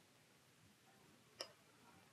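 A single sharp click about one and a half seconds in from a Ryobi Metaroyal VS spinning reel as it is handled; otherwise near silence.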